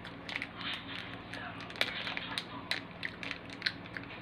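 Eating an ice pop held in its plastic wrapper: scattered small mouth clicks and sucking, with crinkles from the wrapper in the hands, over a faint steady low hum.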